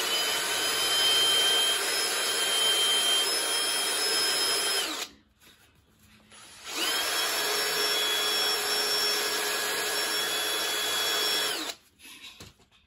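Handheld electric power tool spinning a burr bit at high speed, grinding out the openings of a hard heat-insulating carburettor spacer. It makes two runs of about five seconds each: the whine climbs as the tool spins up and sinks as it stops, with a short pause about five seconds in.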